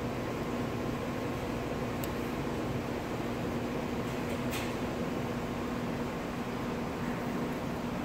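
Steady machine hum with a hiss, the room's constant background noise, with a couple of faint soft clicks, about two seconds in and again midway.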